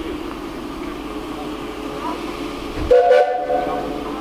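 Steam locomotive whistle: one blast of about a second, starting about three seconds in.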